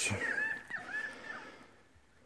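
A string of short, high calls from an animal, each gliding up and down in pitch, fading out about a second and a half in.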